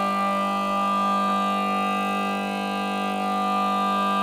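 Kozioł wielki, a Polish bagpipe, sounding its drone under a single long note held on the chanter, steady with no change in pitch.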